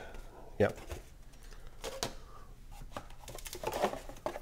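Cardboard being handled as a folded game board is lifted out of its box, with light scrapes and a few sharp taps of card on card.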